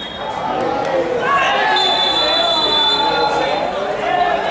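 Referee's whistle: a brief toot, then one long blast of about two seconds, stopping play. Players' voices shout around it.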